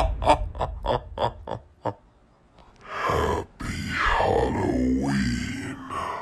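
A man's exaggerated spooky laugh trailing off in quick, fading bursts, then after a short silence a long drawn-out groan that slides down in pitch.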